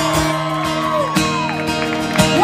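Acoustic guitar played live, with sustained notes ringing.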